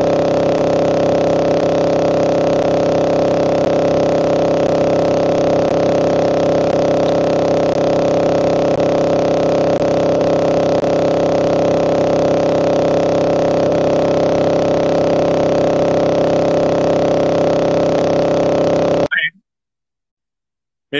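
Loud, steady electronic buzz of a video call's audio glitching, a stuck drone of many mixed tones with no speech through it, typical of a faulty live-stream connection. It cuts off suddenly about a second before the end, leaving silence.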